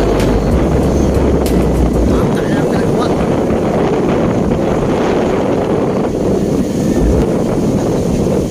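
Strong wind buffeting the microphone, a loud steady rumble that is heaviest in the first two seconds, with surf from large storm waves behind it.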